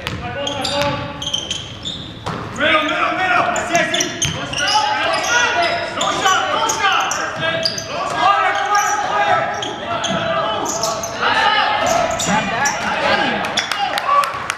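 Basketball bouncing on a hardwood gym floor during play, with overlapping voices of players and spectators in a large gym hall; the voices grow louder about two seconds in.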